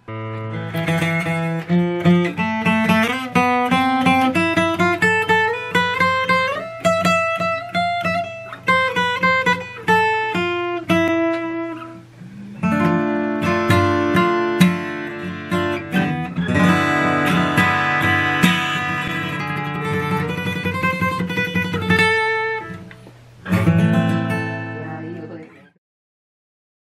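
Yamaha LL16 six-string acoustic guitar played solo: a melody picked over bass notes and strummed chords, with the hand now and then knocking on the guitar body. The tone is rich in overtones, which the player likens to a twelve-string. The playing dips briefly about twelve seconds in and again near the end, and the last chord dies away just before the end.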